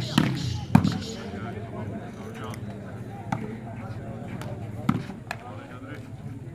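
Volleyball being struck by hand during a rally: a handful of sharp slaps, the loudest just under a second in, over steady crowd chatter.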